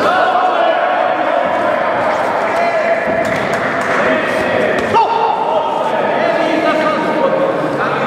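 Voices shouting over a boxing exchange in an echoing hall, with one sharp impact of a punch landing about five seconds in.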